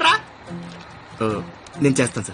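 Film soundtrack: a man's loud exclamation at the start and short bits of speech later, over soft background music.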